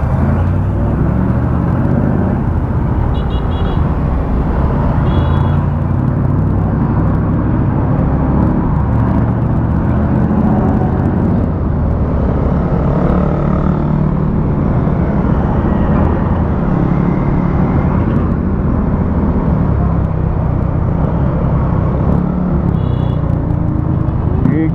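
Motorcycle engine running on the move at road speed, picked up by a camera mounted on the bike, with wind and traffic noise around it. Short high beeps sound three times, twice in the first few seconds and once near the end.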